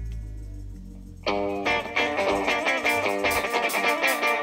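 Live band music: a low held tone fades out over about a second, then an electric guitar comes in suddenly and loudly with a quick, repeated figure of notes, with sharp high hits joining near the end.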